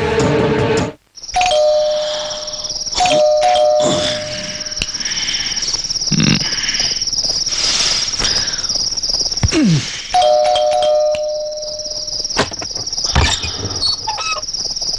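Electric doorbell chime ringing two-tone 'ding-dong' three times: about a second in, again a couple of seconds later, and once more about ten seconds in, over steady high cricket chirping.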